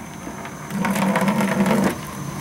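Boiler water gushing from the skim outlet into a plastic bucket, starting about two-thirds of a second in and running steadily. This is the boiler being skimmed: water is drawn off the top to carry away the oil floating on it.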